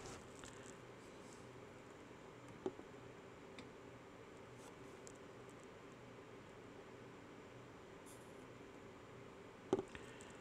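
Faint, steady room tone with a low hum. A soft click comes about two and a half seconds in, and a sharper tap near the end.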